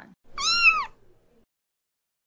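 A cat meowing once, a short high call that rises and falls, lasting about half a second.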